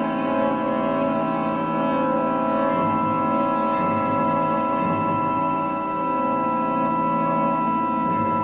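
Symphony orchestra with solo viola playing a dense, sustained chord of many held notes, the low voices shifting slightly while the upper notes stay steady.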